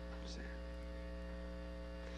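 Steady electrical mains hum, a low drone with a buzz of many even overtones, carried in the sermon's recording or sound-system chain.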